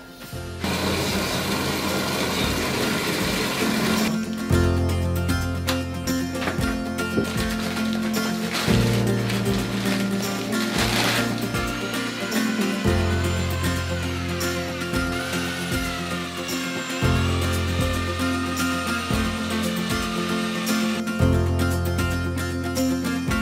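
An SDS drill with a paddle mixer running in a plastic bucket, stirring plaster, under background music with a bass line that changes every few seconds.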